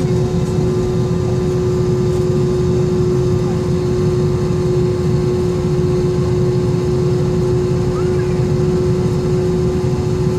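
Steady low drone inside the cabin of an Airbus A320-232 on the ground, with a constant hum tone running through it.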